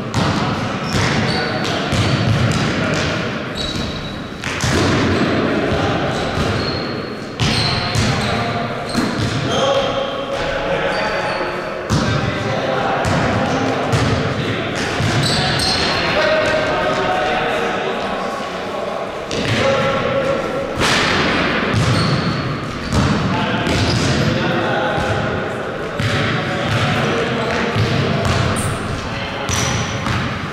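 A basketball being dribbled and bouncing on a hard indoor court, with repeated thuds, short high sneaker squeaks and players' voices, echoing in a large gym hall.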